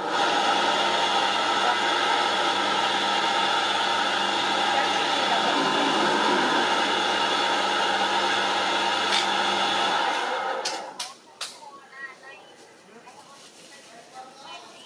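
A loud, steady motor-like drone with a steady hum in it. It cuts off about ten seconds in and is followed by a few sharp clicks.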